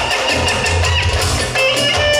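Live dance music from a band: a clarinet plays a bending, ornamented melody over a pulsing bass and drum beat.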